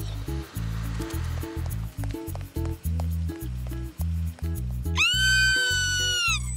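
Bouncy cartoon background music with a plucked bass line. About five seconds in, a girl gives a loud, high scream of fright, held for about a second and falling away at the end.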